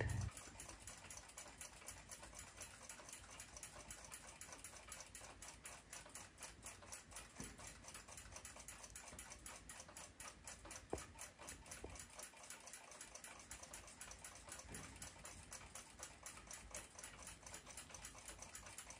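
Faint, quick, steady ticking of a clock running nearby, with one slightly louder click about eleven seconds in.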